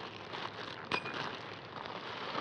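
Steady outdoor background noise (a hiss), with one short, sharp click that rings faintly about a second in.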